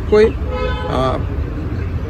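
A brief car horn toot about half a second in, over a steady low rumble of traffic, with a man's speech around it.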